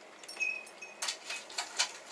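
Chopsticks clicking against ceramic rice bowls and plates, with one short high ring about half a second in, then a quick run of sharp clicks in the second half.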